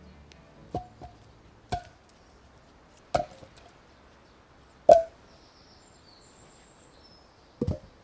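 Wooden logs knocking against each other as a log pole is set down and shifted at the base of a log shelter. There are about six separate hollow knocks, the loudest about five seconds in and a quick double knock near the end.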